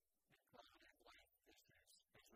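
A man's voice reading prepared testimony aloud into a microphone, recorded very faintly.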